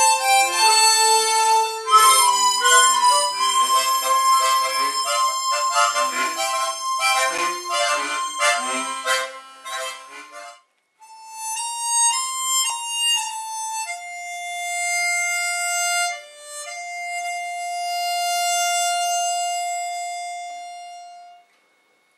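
A harmonica ensemble playing together: a lively passage of quick chords under a held high note, which breaks off about ten seconds in. Then a small group of harmonicas plays a slow melody of long held notes that fades out near the end.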